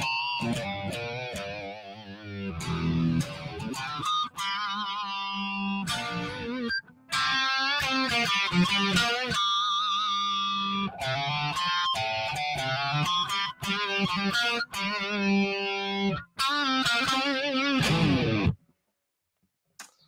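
Electric guitar playing an improvised blues lead over a shuffle backing track in G, with sustained, vibrato-laden notes and bends. The playing stops suddenly about a second and a half before the end.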